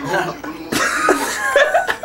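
A man laughing: a breathy, noisy burst of laughter that starts under a second in and runs for about a second.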